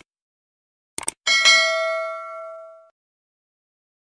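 Subscribe-button animation sound effects: a quick double mouse click about a second in, then a notification-bell ding that rings and fades out over about a second and a half.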